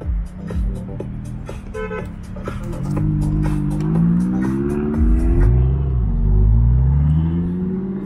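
McLaren 570GT's twin-turbo V8 accelerating alongside, its engine note rising steadily in pitch over several seconds, with a brief dip about five seconds in. Short gusty knocks of wind on the microphone come first.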